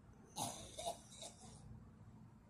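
A person breathing in sharply through the nose close to the microphone, about half a second in, with a second smaller catch of breath just after.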